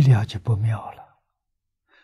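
An elderly man speaking a short phrase in Mandarin, which ends about a second in.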